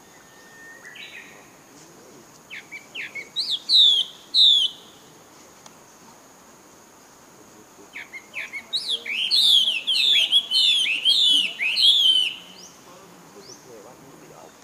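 A songbird singing two runs of quick, curving whistled notes: a short one about two and a half seconds in, and a longer, louder one from about eight seconds in to about twelve.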